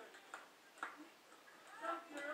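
A few faint, short clicks or taps, spaced irregularly, with a child's voice starting again near the end.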